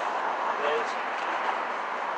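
Steady rushing background noise with no rhythm or changes, under one short spoken word about a third of the way in.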